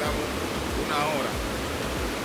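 Steady rush of river water running over rocks, with a man's voice speaking briefly about a second in.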